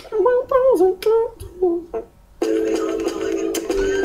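A man hums a short bending melody in broken phrases, as a vocal beat. About two and a half seconds in, a steady held musical chord begins.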